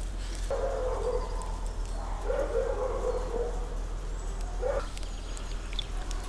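An animal calling in the background in three low, steady notes: a short one, a longer one, then a very brief one.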